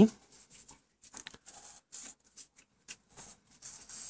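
Felt-tip marker drawing lines on paper, a series of faint, short scratchy strokes.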